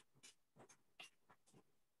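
Near silence, with a few very faint, brief ticks.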